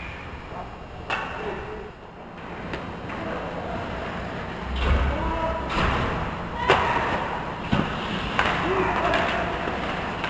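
Ice hockey play in front of the net: a series of sharp knocks and clacks from sticks and puck, the loudest about two-thirds of the way through, over scraping noise, with players' voices calling out.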